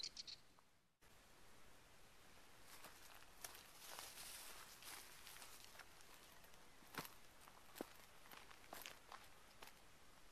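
Very quiet footsteps on dry grass and dirt: scattered soft crunches and rustles over faint outdoor hiss, after a brief dead gap about a second in.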